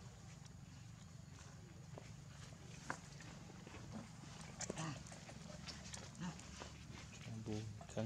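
Macaques on dry leaf litter: faint scattered short squeaks and rustles, the sharpest about three and five seconds in, over a steady low hum.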